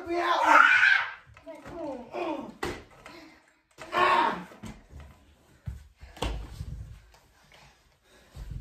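Yelling and grunting during play wrestling, loudest at the start, with a few dull thuds, the heaviest about six seconds in.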